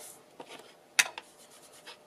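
Hands shuffling and rubbing paper pieces on a cutting mat, with one sharp click about a second in and a couple of lighter ticks.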